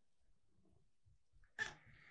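Near silence, then about three-quarters of the way in a domestic cat meows once, with a sudden start and a steady, high-pitched cry that carries on to the end.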